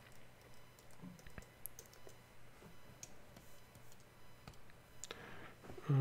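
Faint, scattered clicking of a computer keyboard and mouse over a low steady hum.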